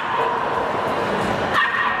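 A dog whining in high-pitched, drawn-out cries, twice: once at the start and again about a second and a half in.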